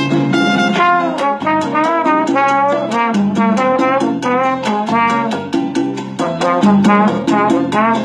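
Trombone playing an improvised solo line, with slides bending between notes, over a Cuban guajira backing track of guitar, bass and percussion with a steady beat.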